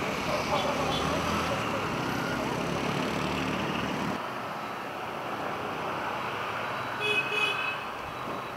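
Street traffic noise with faint voices. A short, high horn toot comes near the end.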